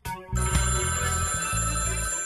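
A desk telephone ringing: one long ring that starts abruptly just after the start and holds for about a second and a half, over music with a low bass.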